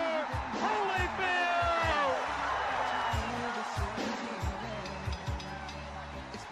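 Music with a steady low beat, mixed with excited voices shouting in celebration during the first couple of seconds.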